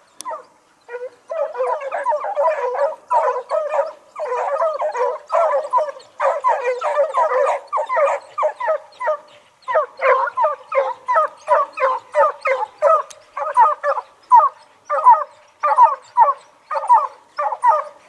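A pack of zorrero hunting hounds baying in full cry on a chase, many voices overlapping. The baying starts about a second in and later breaks into separate bays, about two or three a second.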